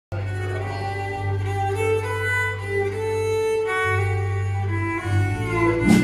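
Live country band playing the instrumental intro of a song: a fiddle carries the melody in long bowed notes over a steady bass and guitar, with a short knock near the end.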